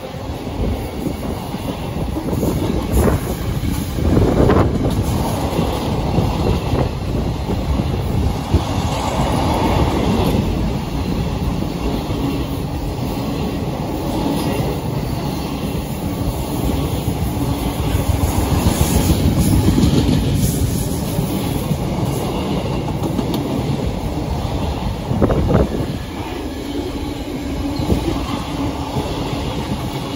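Loaded container wagons of a freight train rolling past: steady wheel-on-rail noise with a few louder knocks, easing slightly in the last seconds as the end of the train goes by.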